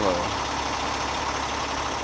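Steady low rumble with an even hiss: background of a truck-stop lot with diesel trucks idling, no distinct event standing out.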